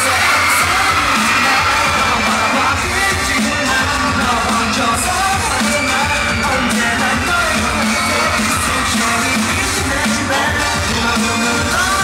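K-pop dance song with male group vocals singing over a steady pop beat, loud and continuous.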